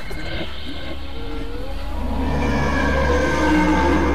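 Horror soundtrack drone: a steady low rumble with held eerie tones above it, swelling louder over the second half.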